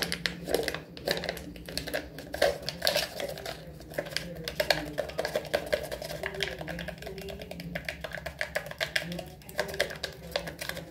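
Fingertips crinkling, scratching and tapping a foil seal stretched over a plastic tub, a dense run of crackles and clicks as the foil is pressed in and crumpled.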